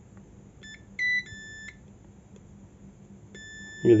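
Digital multimeter's continuity buzzer beeping as its probes touch points on the phone's keypad circuit board. Brief, broken beeps come about a second in, then a steady beep starts shortly before the end. The beep signals an unbroken connection between the probed points.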